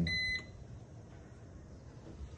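A Bosch built-in freezer's electronic beeper sounding one high steady tone, which stops about half a second in. The beeping is the freezer's warning, which the owners take as a sign that the temperature still needs setting.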